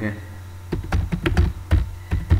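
Computer keyboard being typed on: a quick, uneven run of about eight keystrokes, starting under a second in.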